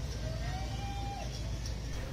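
A steady low rumble of a vehicle, with a faint whine that rises in pitch, holds for about a second and fades.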